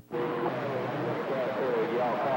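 A weak, distant voice coming in over a CB radio receiver, half buried in a steady hiss of static, after a brief cutout at the start.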